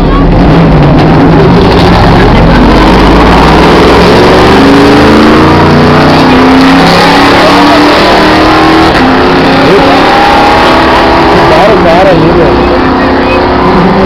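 Race car engines running loud and continuously, several at once, their pitch rising steadily as they accelerate.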